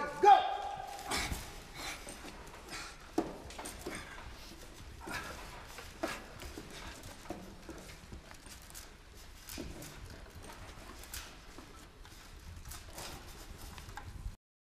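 A loud shouted "Go!" cue, followed by scattered irregular knocks and clatter, roughly one every second, over a low background rumble.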